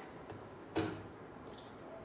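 Fabric being set under the presser foot of a Juki industrial sewing machine, with one short click about three-quarters of a second in and a fainter one later, over faint steady background noise. The machine is not yet stitching.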